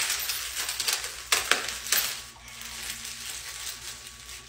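Clear plastic crackling and clicking as it is handled, with the sharpest clicks in the first two seconds and quieter handling after.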